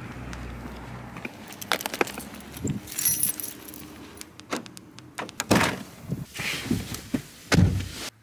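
A bunch of keys jangling, with footsteps and handling clicks, and a car door shutting with a loud thump near the end.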